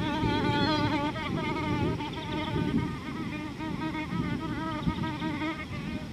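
A flying insect buzzing close to the microphone, its pitch wavering up and down as it moves about, slowly growing fainter.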